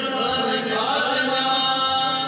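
Qawwali party singing in chorus over harmoniums, the voices holding long, slowly bending notes.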